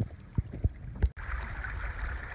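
Shallow creek water running steadily over a riffle, louder from about a second in. A few short low thumps come in the first second.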